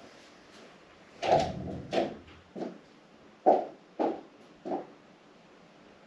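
Six knocks and thumps about half a second apart, in two runs of three with a short pause between them. The first and fourth are the loudest.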